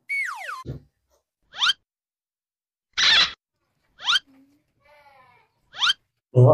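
Cartoon-style comedy sound effects: a falling whistle-like glide, then short rising boing-like zips about every two seconds, with a louder burst in the middle.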